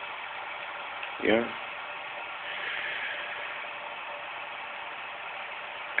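A steady low hiss with no clear pattern, and one spoken "yeah" about a second in.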